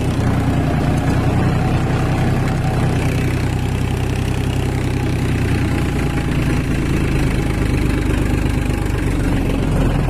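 Farmtrac 45 tractor's three-cylinder diesel engine running steadily at full throttle under load, driving a rotavator whose blades churn the soil. The low engine note shifts slightly about seven seconds in.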